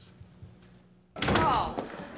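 After a second of near quiet, a door thuds open about a second in, followed at once by a woman's excited "Oh!"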